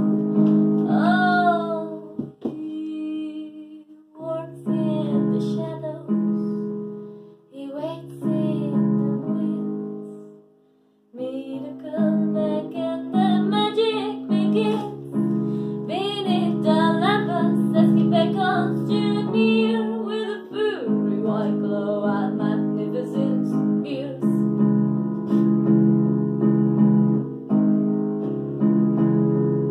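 A solo female voice singing a jazzy song to her own piano accompaniment on a keyboard. About ten seconds in, voice and keyboard stop for a brief near-silent pause, then both come back in.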